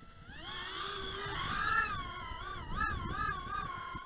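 Brushless motors and props of a GEPRC GEP-HX2 110 mm micro FPV quadcopter spinning up and lifting off. A high whine rises about half a second in, then wobbles up and down in pitch as the throttle is worked.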